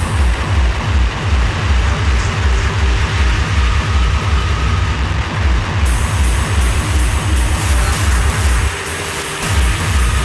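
Hardcore industrial DJ mix at 160 BPM with a pounding kick drum. The highs are filtered out for the first half and snap back about six seconds in. The kick drops out briefly near the end, then returns.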